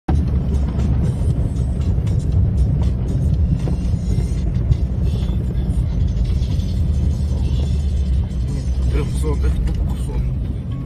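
Steady low rumble of a car driving, heard inside the cabin: road and engine noise.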